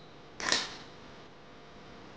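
Scissors cutting once through the leaf strips of a woven leaf-wrapped rice packet, trimming an overlong end: a single short, sharp snip about half a second in.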